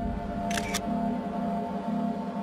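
A camera shutter clicking once, a quick double click about half a second in, over steady droning background music.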